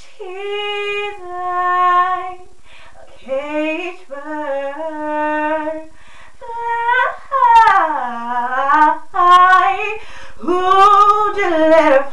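A woman singing unaccompanied, without words: a series of held notes and sliding runs, with short breaths between phrases, growing louder and more ornamented in the second half. The small room gives the voice a close, boxy sound.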